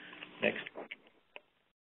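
A man says one word, followed by a few faint, short breathy sounds. Then near silence, broken once by a brief click.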